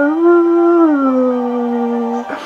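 A man singing unaccompanied, holding one long note that steps up in pitch just after the start and slides back down about a second in.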